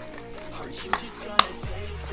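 Two short sharp clicks about half a second apart from the hinged folding arms of a DJI Mini 2 drone being swung out by hand, over background music.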